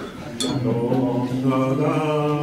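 Voices chanting a wordless sung "da, da" on long held notes, with a sharp click about half a second in.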